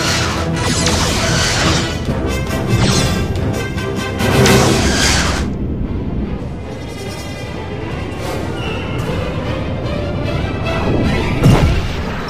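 Dramatic film score under space-battle sound effects: several loud surges of weapons fire and explosions in the first half, and one sharp, heavy impact near the end.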